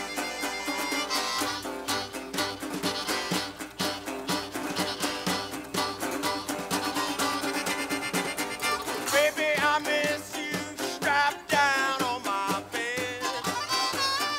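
Acoustic string band playing live, without singing: fiddle and harmonica over acoustic guitar and upright bass, with a steady rhythmic pulse. A low bass line comes in about a second and a half in, and a wavering lead melody stands out in the last few seconds.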